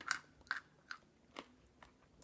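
A person chewing a crunchy nut and candy snack mix close to the microphone: about five short crunches, roughly one every half second.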